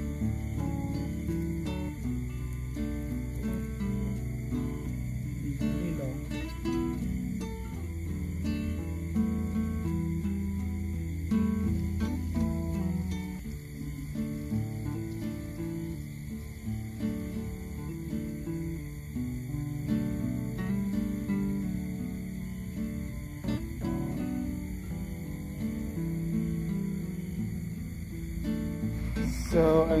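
Background music: a steady run of short melodic notes with no break.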